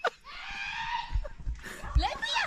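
A high-pitched, drawn-out shout from a person, about a second long, with another short call near the end and a few low thumps underneath.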